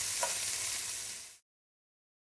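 Sliced onions sizzling in hot oil in a frying pan, stirred with a wooden spoon with a few light scrapes. The onions are sautéing until wilted. The sizzle fades out a little over a second in.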